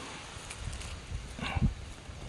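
Faint rustling and crackling of dry leaf litter as a large white mushroom is pulled up from the forest floor by hand, with one brief louder sound about one and a half seconds in.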